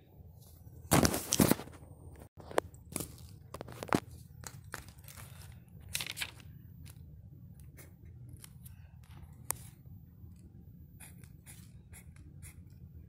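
Paper being handled, then a pen scratching short tally strokes on notebook paper: a loud rustle about a second in, followed by scattered scrapes and taps.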